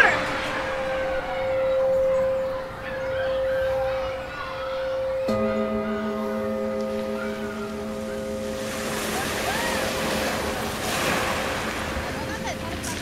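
A steady high tone sounds over a noisy wash that swells and falls, like surf. About five seconds in, a lower buzzing tone with overtones starts abruptly and stops about four seconds later.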